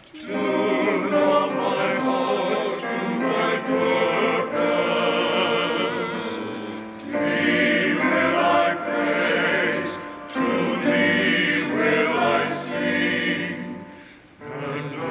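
A men's ensemble singing in harmony with piano accompaniment, in long sustained phrases with brief breaks about 7 and 10 seconds in.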